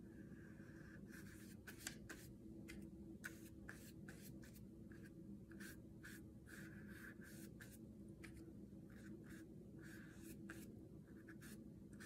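Faint, quick, irregular strokes of a watercolour paintbrush against paper, over a low steady hum.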